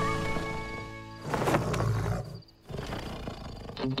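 A cartoon bear making two loud, rough growling sounds, the first about a second in and the second near the end, as the background music fades away.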